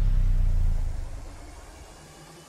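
Deep rumbling tail of an intro sound effect, which dies away about a second in to a faint remainder.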